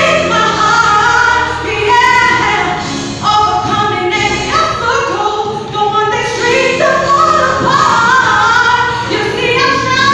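A woman singing a song into a handheld microphone, her voice held in long, gliding notes.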